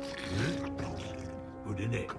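Film soundtrack: held orchestral chords under the deep, growling voices of the trolls.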